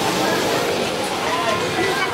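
Several people talking nearby, with a steady haze of street noise behind the voices.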